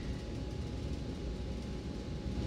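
Airliner cabin noise in flight on the approach: a steady low rumble of engines and airflow.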